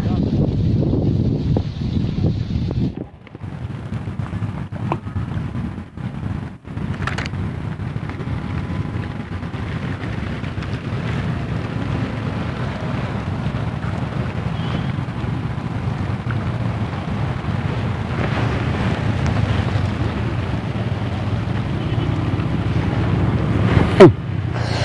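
Wind buffeting the microphone: a steady low rumble, with brief breaks about three and six and a half seconds in.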